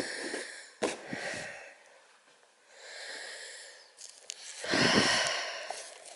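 A person's breathing close to the microphone: three breathy, hissing breaths, the last and loudest about five seconds in, with a single click about a second in.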